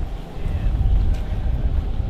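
Wind buffeting the camera microphone outdoors: an uneven low rumble that dips briefly at the start and then returns.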